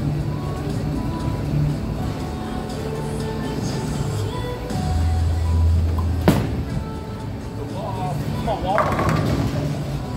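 Bowling alley din of background music and voices. About five seconds in comes a low rumble lasting a second and a half, a bowling ball rolling down the lane, which ends in one sharp crack as it reaches the pins.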